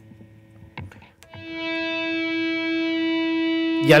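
Electric guitar natural harmonic swelling in about a second in as the volume pedal is raised, then held as one long steady note rich in overtones, kept sounding with delay and feedback. A couple of faint clicks come just before the swell.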